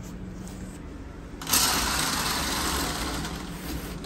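A fabric curtain drawn along its ceiling rail. A loud swishing scrape starts about one and a half seconds in and fades over about two seconds, over a low steady hum.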